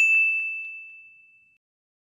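A single high-pitched ding, like a small bell struck once, ringing out and fading away over about a second and a half: an edited-in chime sound effect over a title card.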